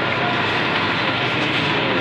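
Steady, loud rushing background noise with a faint low hum, unchanging throughout.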